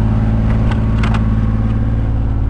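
Boat engine running with a steady low hum, with a few light clicks about half a second and a second in.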